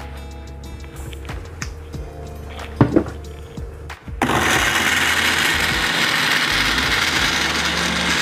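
Electric countertop blender switched on about four seconds in and running steadily at full speed, grinding shallots, garlic, ginger and candlenuts with a little added water into a smooth spice paste. A single knock comes shortly before it starts.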